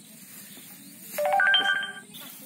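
Short electronic chime: steady tones enter in quick succession, each higher than the last, and ring together as a chord for under a second before cutting off sharply.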